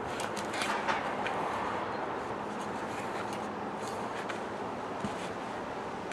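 A kitchen knife worked through the hard stem end of a large melon's rind, giving a few faint scrapes and crunches over a steady outdoor background hum.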